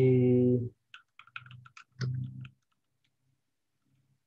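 A drawn-out spoken syllable, then a quick run of keystrokes on a computer keyboard lasting about a second as a search term is typed, then a brief voiced sound.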